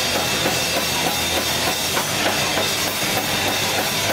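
Alternative rock band playing live through amplifiers: drum kit and electric bass guitar, loud and continuous.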